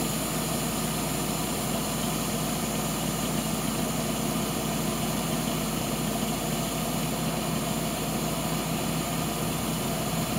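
Tandem-axle farm dump truck's engine idling steadily while its raised grain box is lowered on the hoist.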